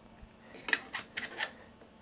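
A handful of light metal clicks and scrapes, about a second in, as a 1.25-inch star diagonal's barrel is slid into the focuser's 2-inch-to-1.25-inch adapter.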